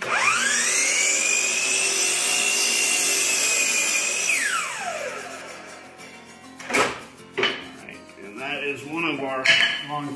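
Metabo HPT sliding compound miter saw spinning up with a rising whine and running as its blade cuts through a red oak two-by-two, then released and winding down about four seconds in. A couple of sharp knocks follow a little later.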